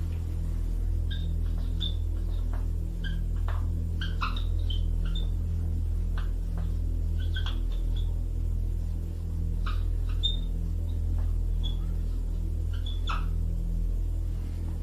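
Handwriting: short, scattered squeaks and scratches of a writing implement as words are written out stroke by stroke, over a steady low electrical hum.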